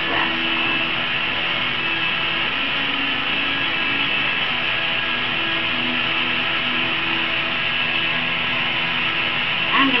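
Handheld gas torch burning with a steady hiss as glass is heated in its flame.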